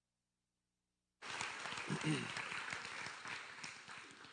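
Silence for about a second, then the sanctuary sound cuts in suddenly: a congregation clapping, with a brief voice, dying away gradually.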